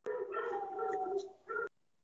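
A drawn-out whining vocal call at a steady pitch, about a second and a half long, followed by a short second call; both start and stop abruptly.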